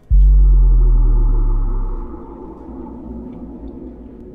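A deep, loud boom edited in as a dramatic music sound effect, struck at the start and ringing out as it fades over about two seconds, over a fainter steady drone.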